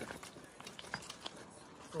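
Footsteps on a riverbank of loose cobbles and gravel, with stones clicking and crunching underfoot in an irregular run of small knocks.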